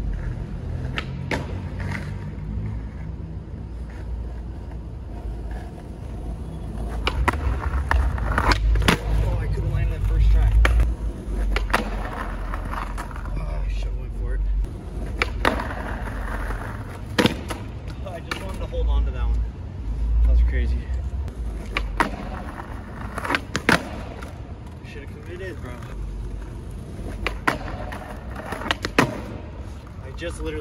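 A skateboard rolls on street asphalt with a low rumble that rises and falls, broken by about a dozen sharp clacks as the tail pops, the trucks hit and grind along a lacquered concrete curb, and the board lands or falls.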